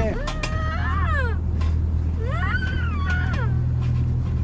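A dog whining: high-pitched whines that rise and fall, in two spells.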